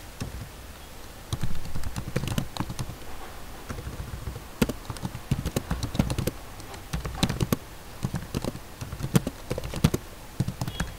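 Typing on a computer keyboard: an uneven run of keystroke clicks, roughly three a second with short pauses, as a line of text is entered.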